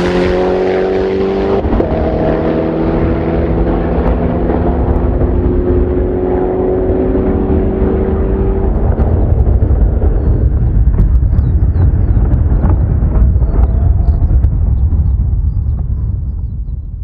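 Koenigsegg Agera S twin-turbo V8 supercar accelerating hard away down a runway. It changes up through the gears several times, the engine note stepping at each shift, and fades into the distance. A loud low rumble dominates the second half.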